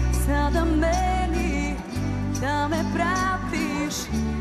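A pop band playing live while a woman sings the melody into a microphone, over sustained bass notes that break off briefly about halfway through.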